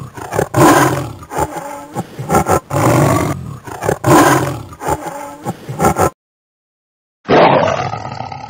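Tiger roaring: a series of rough roars and growls that cuts off suddenly about six seconds in, then another roar begins about a second later.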